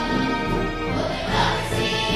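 Music with a choir singing held notes.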